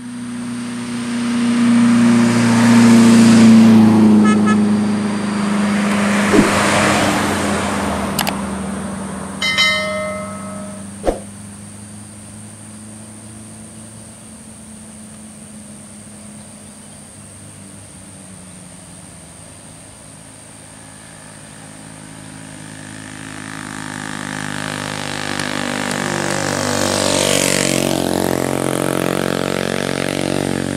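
Heavy vehicle engines on a steep mountain road. One runs loud for the first few seconds and fades away by about ten seconds in, with a few sharp clicks and a brief higher tone along the way. Then a bus's engine grows steadily louder over the last several seconds as the bus comes down the hill.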